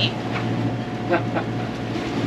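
Steady low drone of a sailboat's engine running under way, with a few brief faint voice sounds over it.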